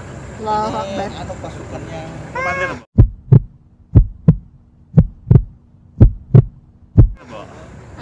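Voices of riders talking and laughing, then a sudden cut to a heartbeat sound effect: double thumps, lub-dub, about once a second, five beats over a faint steady hum, before the voices come back near the end.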